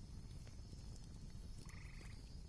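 Faint background ambience with a low rumble, and a short pulsed croak, frog-like, near the end.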